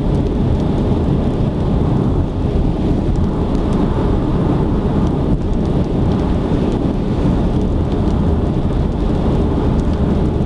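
Steady road and wind noise inside a car cruising at expressway speed: a dense, even low rumble from the tyres and air.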